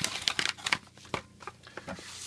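Paper bubble mailer crinkling and rustling as it is handled and set aside: a cluster of light crinkles and clicks in the first part, then a few faint ticks.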